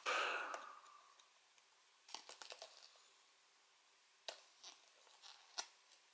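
Faint fingernail clicks and light scrapes on a metal Blu-ray steelbook case as a cardboard card is picked off it: a short cluster about two seconds in, then a few single clicks.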